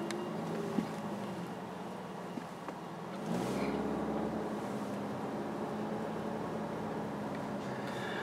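Seat Leon Cupra's 2.0-litre turbocharged four-cylinder engine heard from inside the cabin while driving, with road noise. About three seconds in, the engine note rises and grows louder as the car accelerates, then runs steady.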